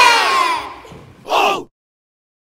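A group of children and adults shouting 'Hajime!' together in a large hall, the shout trailing off in the first half-second. A brief single shout follows about a second and a half in, then the sound cuts off suddenly to silence.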